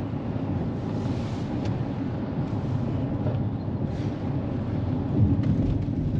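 Steady low rumble of road and engine noise inside a Kia's cabin while driving at highway speed.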